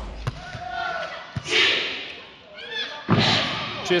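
A volleyball thudding sharply on the hard court floor a couple of times as it is bounced before a serve, with arena noise behind it.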